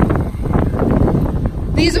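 Wind buffeting the microphone: a loud, rough low rumble.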